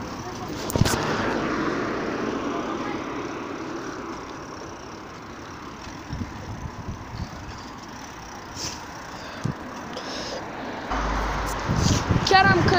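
Road traffic: a rushing noise like a vehicle going past comes in about a second in and fades slowly over several seconds. A low rumble joins it near the end.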